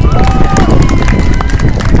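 An outdoor crowd applauding, a dense run of hand claps.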